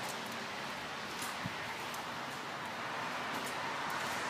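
Steady outdoor background hiss with a few faint ticks and a soft knock about one and a half seconds in.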